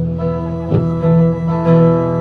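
Acoustic guitars strumming a slow country tune, with steady held notes ringing over the chords and a strum about once a second.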